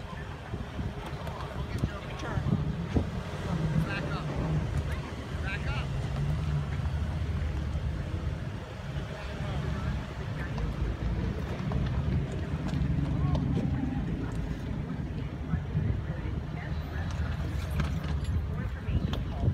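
Jeep Renegade Trailhawk's engine running at low speed as it crawls over loose rock rubble, a steady low rumble, with wind on the microphone and voices in the background.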